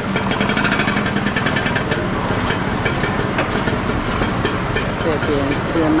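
Motorcycle engine running close by in slow street traffic, over the noise of a busy street with people talking; a voice comes in near the end.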